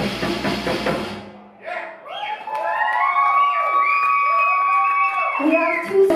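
Live rock band with drum kit playing, then stopping abruptly about a second in. Audience cheering and whooping follows, several voices held and sliding in pitch.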